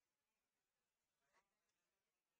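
Near silence: room tone, with one faint, brief rustle about a second and a half in.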